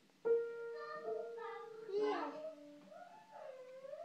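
Piano keys struck by a toddler's hands: a note sounds sharply about a quarter second in and rings on for a couple of seconds, and a lower note follows around two seconds in. A child's voice sings over the piano in the second half.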